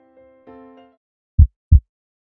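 Soft keyboard chords fade out, then a heartbeat sound effect starts about a second and a half in: two low, loud thumps about a third of a second apart, a lub-dub.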